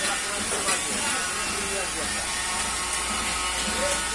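Indistinct voices talking over a steady hiss, with a low steady hum that grows stronger about a second and a half in.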